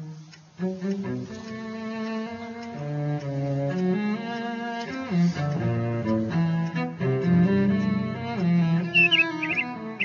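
Slow cello music playing, one sustained note after another. Near the end a small caged bird gives a few quick, high chirps over it.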